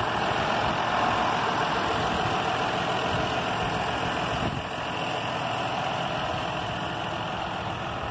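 John Deere 6150R tractor's six-cylinder diesel engine idling steadily, a little quieter from about halfway through.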